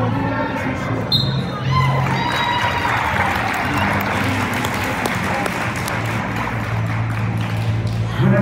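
A sharp slap or thud about a second in, then several seconds of crowd cheering and clapping, echoing in a school gym, as a wrestling match is won by a pin.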